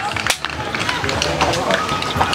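Ballfield and dugout background: distant, unclear voices and chatter with scattered short clicks and knocks, and a faint steady high tone coming in near the end.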